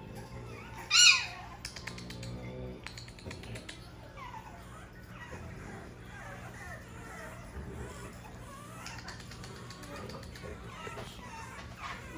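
French bulldog puppy whining: a loud, high yelp falling in pitch about a second in, then fainter whimpers on and off.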